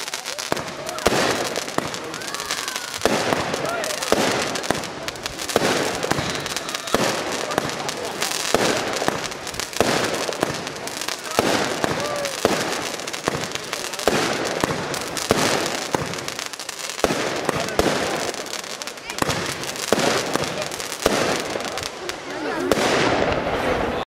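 Nico 'Big Ben' firework going off: a long, steady series of shots and bursts, one bang roughly every second, each trailing off in a hiss of noise.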